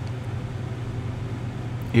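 Steady low hum with an even hiss, with no distinct events: the background noise of the recording.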